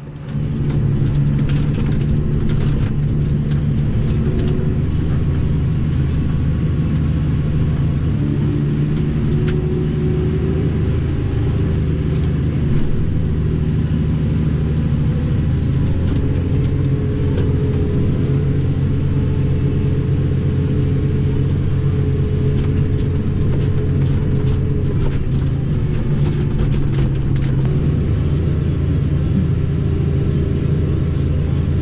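Tractor engine running steadily, heard from inside the cab, its low drone shifting slightly in pitch now and then. Faint scattered clicks sound over it.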